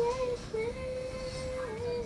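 Background song: a high voice sings one long held note, dipping slightly in pitch near the end.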